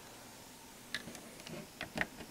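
Several small, sharp clicks and taps from a cable plug being worked into its port by hand, starting about a second in, the last one the loudest.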